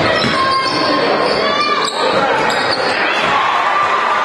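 Live gym sound of a basketball game in play: a ball dribbling on a hardwood floor, with voices echoing in a large hall and short high sneaker squeaks about two and a half seconds in.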